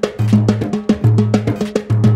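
Timbales with a mounted cowbell, played fast with sticks in a Latin rhythm: quick, even strokes on the heads and bell over a repeating low bass note.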